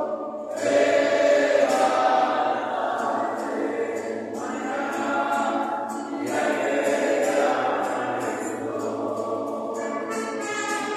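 A group of voices singing a devotional song together, choir-style, with short pauses between phrases about half a second, four and six seconds in.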